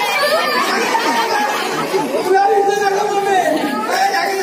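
Actors' raised voices in a stage play, echoing in a hall, one voice drawn out in a long held tone for about a second past the middle.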